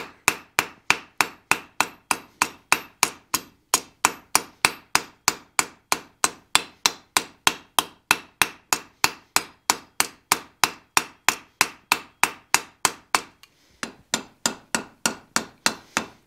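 Hand hammer striking red-hot round steel bar on an anvil in steady, evenly spaced blows about three a second, drawing a light taper into the bar just behind a forged ball. A brief pause about four seconds in, and another near the end, after which the blows come lighter and quicker.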